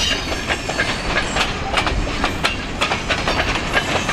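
A loaded freight train's cars rolling past close by, their steel wheels clicking and clanking irregularly over the rail joints, with a brief high squeal at the start.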